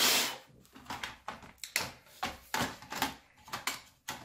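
Handling noise as a laptop hard drive in its metal caddy is fitted into the drive bay: a short, loud burst of handling noise at the start, then a series of light clicks and knocks from plastic and metal parts.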